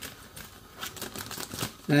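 Scissors snipping through a plastic food bag: a run of quick cuts with the thin plastic crinkling.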